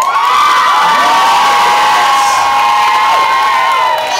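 Nightclub audience cheering with long, loud, high-pitched screams from many voices at once, easing off near the end.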